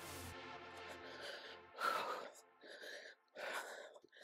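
A woman breathing hard in short gasping breaths, about one a second in the second half, from exertion in a high-intensity cardio interval. Faint background music with a low bass line plays under it and drops out about halfway through.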